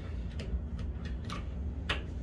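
Plastic wall toggle light switches being flicked: a few sharp separate clicks, the loudest near the end, over a steady low hum.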